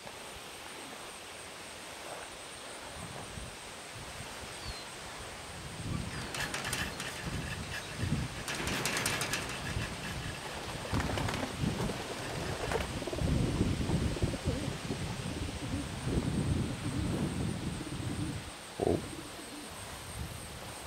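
Birds in a wire pen fluttering and rustling in irregular bouts, starting about six seconds in, with a few sharper bursts of wing-beating.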